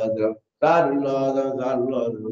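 A man's voice chanting a litany of the Prophet Muhammad's names in Arabic, in a steady melodic recitation, with a brief breath pause about half a second in.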